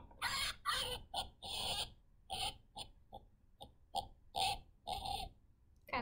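Recorded pig oinks played through the small speaker of a wooden farm-animal sound puzzle: about a dozen short grunts in an uneven run lasting about five seconds.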